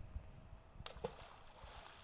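A small block of cheese thrown into a pond, landing with a short, faint splash a little under a second in and a brief wash of water after it.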